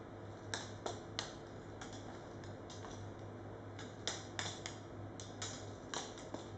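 Irregular light clicks and ticks, a few a second and sometimes in quick pairs, as the thin wire arms of the hanging rubber-bellowed units tap against one another. A steady low hum sounds beneath them.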